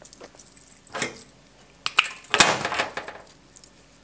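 Florist's secateurs and flower stems being handled: a sharp click about a second in and two more near the two-second mark. These are followed by the loudest sound, a brief rustling burst lasting under a second.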